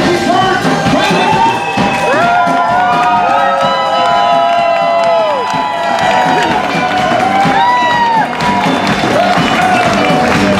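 Live band playing an instrumental introduction with a steady drum beat and sliding, bending melody lines, with cheering from the crowd.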